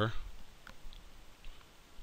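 A few faint computer-mouse clicks over quiet room noise, as a spoken phrase trails off at the start.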